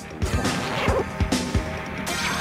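Action music from an animated soundtrack, with a quick run of crashing, thudding hits, about three a second.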